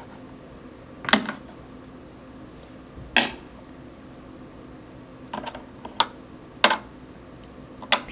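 Metal tweezers and a thin metal tool clicking and tapping against a plastic eyeshadow pan and its dish: a handful of separate sharp clicks spread a second or two apart.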